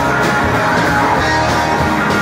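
Live garage rock band playing loudly: electric guitar, bass guitar and drum kit together.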